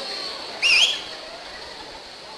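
A single short, loud whistle about half a second in, its pitch rising, dipping and rising again.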